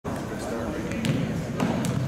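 A basketball bounced a few times on a hardwood gym floor as a player dribbles at the free-throw line, over the echoing chatter of spectators.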